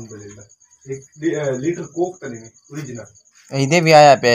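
A cricket chirping in a steady, high, evenly pulsing trill, under men's voices talking in bouts that get loudest near the end.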